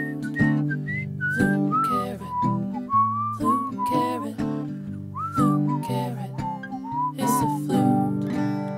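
A carrot flute, a carrot drilled with finger holes, playing a melody of pure whistle-like notes with slides between them over a strummed acoustic guitar accompaniment.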